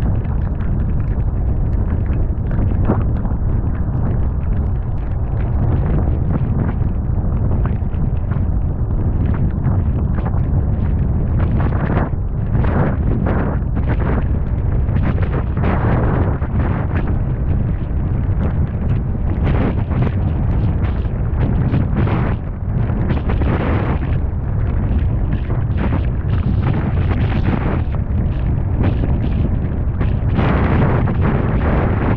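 Strong storm wind near a wedge tornado buffeting the microphone: a heavy, continuous low rumble that swells with several stronger gusts in the second half.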